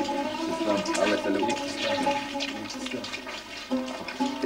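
Steady rushing water, a continuous wash of noise.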